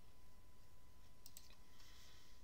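Computer mouse button clicking a few times in quick succession, a little past halfway through, over faint room noise.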